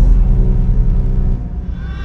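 A deep, loud rumble, strongest at the start and dropping off about one and a half seconds in.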